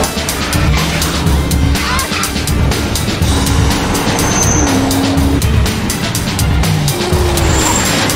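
Action-film soundtrack: a driving score with a fast percussive beat over a car engine running at speed and the road noise of passing lorries.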